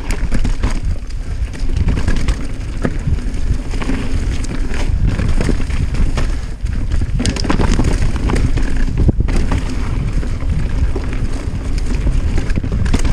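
Mountain bike riding fast down dirt singletrack: wind buffets the action camera's microphone in a heavy, steady rumble, while tyres roll over dirt and leaf litter and the bike gives off frequent sharp clicks and rattles over the bumps.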